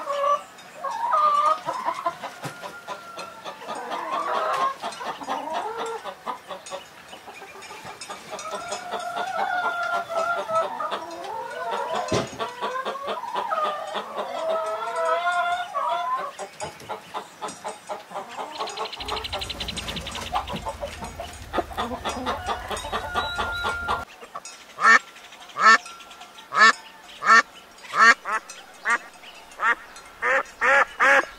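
Chickens clucking and calling, then, in the last few seconds, a run of loud quacks about two a second.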